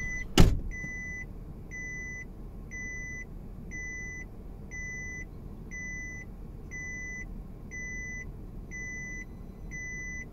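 A car's seatbelt warning chime beeping over and over, a little more than once a second, because the driver's belt is unfastened, over the low running noise of the car heard inside the cabin. A single loud thump about half a second in.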